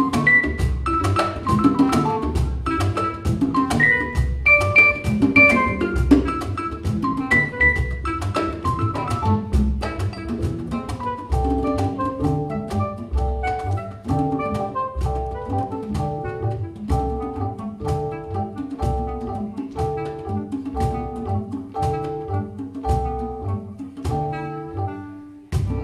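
Live world-jazz band playing: hand percussion and drums with a steady beat over upright bass and keyboards. From about halfway, a short keyboard figure repeats over and over.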